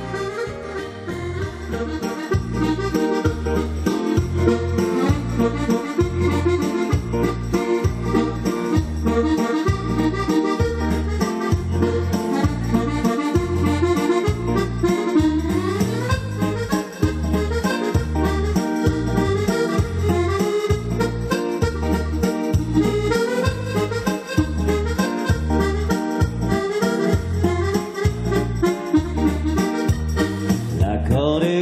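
Chromatic button accordion playing an instrumental melody over a backing track with a steady bass beat.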